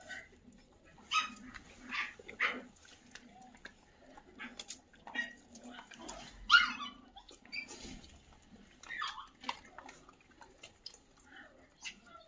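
Several dogs eating dry kibble from bowls, with short barks and yelps now and then; the loudest, a yelp falling in pitch, comes about six and a half seconds in.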